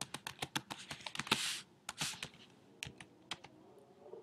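Typing on a computer keyboard: a rapid run of keystrokes for the first second and a half, then a few scattered keystrokes, with a couple of short hisses among them.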